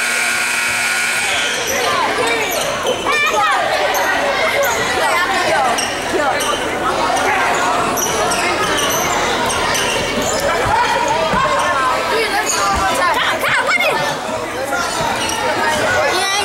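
Basketball bouncing on a hardwood gym floor amid voices of players and spectators, echoing in a large gym.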